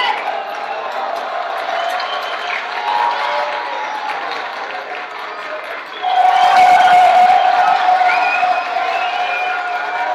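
A crowd of young people talking and calling out over one another, swelling into louder cheering and shouting about six seconds in.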